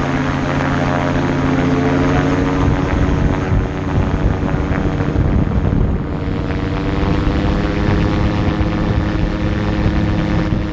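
Magni Gyro M16 gyroplane's engine and pusher propeller running at full takeoff power, the pitch rising a little in the first couple of seconds and then holding steady. A rough, uneven rumble from the wheels rolling over the grass runway runs underneath.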